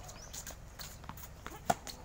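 Tennis balls struck by rackets and bouncing on a hard court: a few separate sharp knocks, the loudest near the end.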